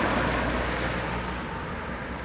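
A car passing on the road, its noise loudest at first and fading away over the two seconds.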